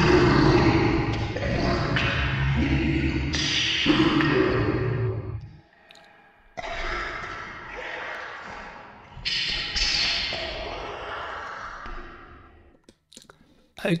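A man's voice played back at half speed, pitched down an octave and heavy with reverb, intoning two long, slow phrases ("All hail the great Lord Satan!" then "Click like and subscribe!"), each dying away in a long reverberant tail.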